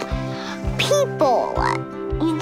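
A young girl's voice swooping up and down in pitch, sounding sing-song rather than like plain speech, over background music with held tones and a steady low beat.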